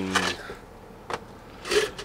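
Men talking, with a quiet pause in the middle broken by a single short click about a second in.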